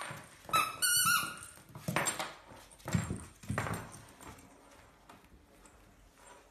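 Cavalier King Charles Spaniel puppy playing with a squeaky plush toy. A short run of high squeaks comes about half a second in, then scuffles and a few soft thumps on the wooden floor as the puppy tugs at the toy, dying away in the last seconds.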